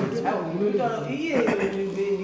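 A person's voice talking without a break, with one syllable drawn out and held at a steady pitch about a second and a half in.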